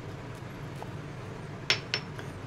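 Two short glass clinks close together near the end, from a small glass spice jar of crushed black pepper being handled, over a low, steady room tone.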